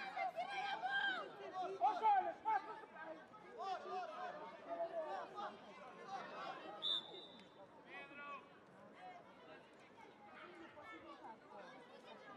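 Overlapping calls and shouts from several voices on and around a youth football pitch, busiest in the first few seconds. About seven seconds in, a referee's whistle gives one short, high blast.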